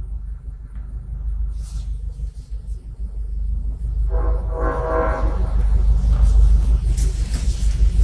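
A steady low rumble that grows louder, with a brief held hum-like tone about four seconds in lasting over a second.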